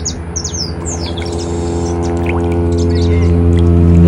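A motor drones at one steady low pitch and grows steadily louder. High, short bird chirps sound over it in the first second and a half.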